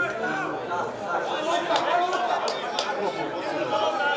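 Several voices talking at once in overlapping chatter, with no single speaker standing out.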